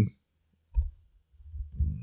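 A few scattered computer keyboard keystrokes and clicks, heard as short, dull taps while a variable name is deleted and retyped.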